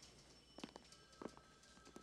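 Faint footsteps of people walking across a hard floor, about three soft steps.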